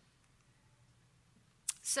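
Near silence: the faint room tone of a lecture hall, then a short sharp click near the end just as a woman's voice starts again.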